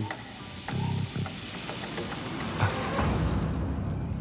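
Fine gold flakes pouring off a folded paper into a plastic jar, a soft continuous hiss that tails off after about three seconds.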